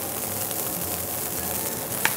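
Water boiling hard in a wok with sliced pork meatballs and scallions, a steady bubbling hiss.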